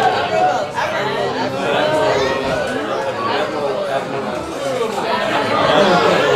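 Several people talking over one another, an indistinct babble of voices with no single speaker standing out.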